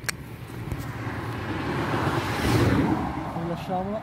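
A passing vehicle: a rushing noise that swells, peaks a little past halfway and fades away. A sharp click right at the start and a short voice sound near the end.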